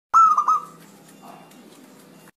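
Zebra dove (perkutut) cooing: one short phrase of three quick clear notes in the first half second, then only a faint hiss.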